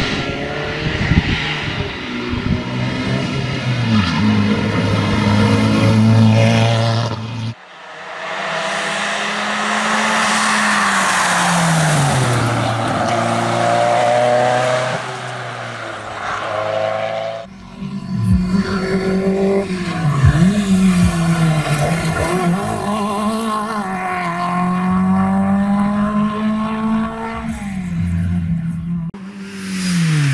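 Historic rally cars being driven hard on a tarmac stage, one run after another. Their engines rev up through the gears and drop away on the lift and downshift into bends. The sound switches abruptly twice as one pass gives way to the next.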